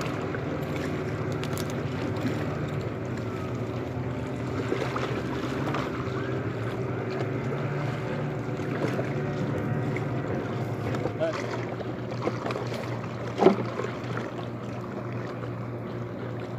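A steady low engine hum with wind on the microphone. A single sharp knock sounds about thirteen seconds in.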